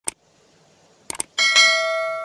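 Subscribe-button animation sound effects. A sharp click comes first, then a quick double click about a second in, then a notification-bell ding that rings on and slowly fades.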